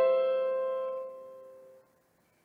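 Electric piano chord held and dying away, its several notes fading out to silence shortly before the end.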